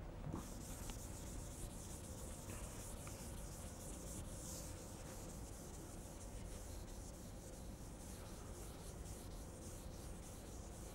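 Faint rubbing of a board duster wiping chalk off a blackboard: a scratchy hiss in repeated strokes, stronger in the first half.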